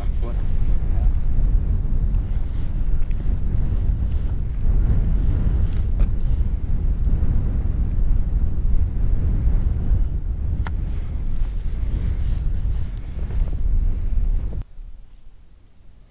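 Wind buffeting an outdoor camera microphone, a loud low rumble with a couple of sharp clicks from handling. It cuts off suddenly near the end.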